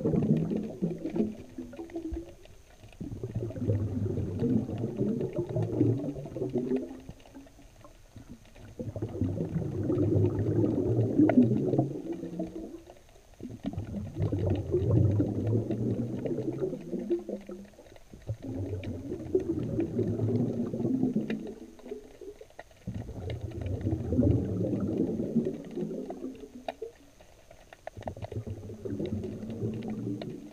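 Underwater sound picked up by a GoPro in its waterproof housing on a fishing line in the sea: low rumbling water surges recurring about every four to five seconds, each dying away before the next.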